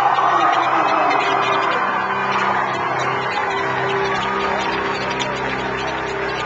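Concert audience cheering and whooping, with a steady low chord held underneath.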